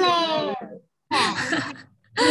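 Speech only: a voice in two short phrases, the first drawn out.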